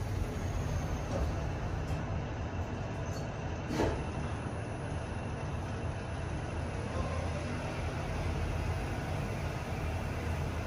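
Otis Gen2 machine-room-less lift car travelling down, a steady low rumble of the ride heard inside the car. There is a brief louder noise about four seconds in.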